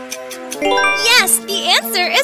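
Background quiz music with a quick rising chime jingle about half a second in, the answer-reveal sound. It is followed by a high, swooping cartoon-like voice.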